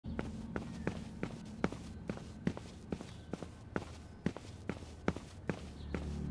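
Quick, regular footsteps of hard-soled shoes on stone stairs, sharp clicks about two to three a second, over a faint low hum.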